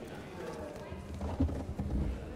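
Low background murmur of voices and people moving about, with a few dull knocks.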